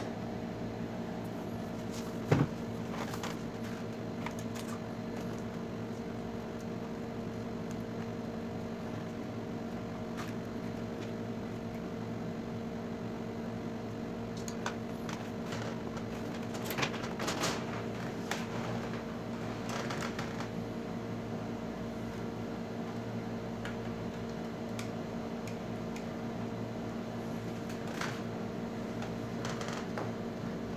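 A steady machine hum made of several low tones, like a fan or air-conditioning unit running, with scattered light clicks and knocks of parts being handled. One sharp knock comes about two and a half seconds in.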